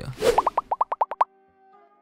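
Animated logo intro sound effect: a short whoosh, then a quick run of about ten rising bloop tones, then a soft held chord that fades out.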